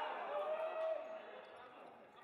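Men's voices echo in a sports hall, with one long held call about half a second in; the voices fade after about a second. A few faint thuds of a ball bouncing on the hard court floor come through.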